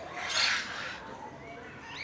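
A parrot gives one loud, harsh squawk about half a second in, followed by fainter, shorter bird calls.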